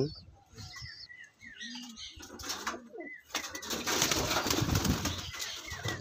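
Pigeons (Andhra pigeons) with soft low coos and short calls, then a rush of wing flapping that starts about three seconds in and lasts some two and a half seconds.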